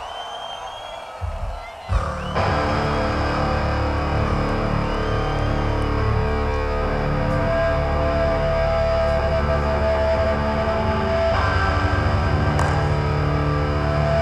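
Amplified electric guitars and bass holding a long, steady, droning chord between thrash-metal songs, coming in suddenly about two seconds in after a quieter start. The held notes shift a little near the end.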